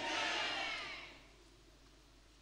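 Fading echo of a man's voice over a PA in a hall, dying away about a second in, then near silence.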